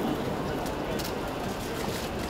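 Steady background noise of a busy outdoor event, with a faint murmur of distant voices and a few faint clicks about a second in.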